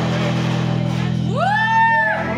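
A rockabilly band's final chord ringing out on electric guitars and upright bass, held steady. Just past halfway a high cry rises and holds.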